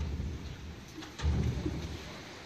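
Low rumbling noise on the camera microphone in two bursts, one at the start and a louder one just past a second in, with a couple of faint clicks between them.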